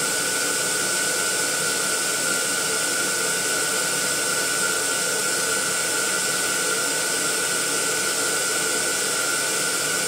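Electric air pump running steadily with a constant whine and airy hiss, blowing up a row of latex balloons.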